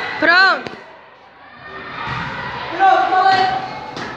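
Voices in a classroom: a short, high-pitched cry that rises and falls about a third of a second in, then a quieter stretch and murmured talk near the end.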